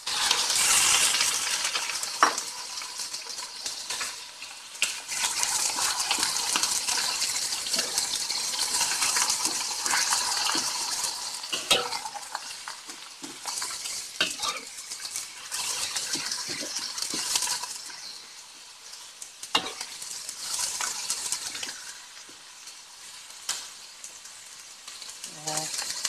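Diced raw chicken breast and onions sizzling in hot oil in a wok, with a few sharp knocks of a spatula stirring. The sizzle surges as the chicken goes in, stays strong for about the first twelve seconds, then dies down.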